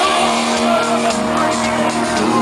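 Live pop-rock band playing through a concert sound system, heard from within the audience, with held chords sounding steadily.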